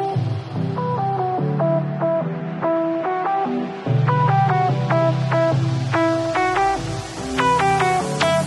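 Background music: a quick run of plucked notes over a steady low bass line.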